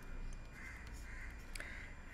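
A few short, faint calls, like an animal calling in the background, over quiet room noise, with a single light tap about a second and a half in.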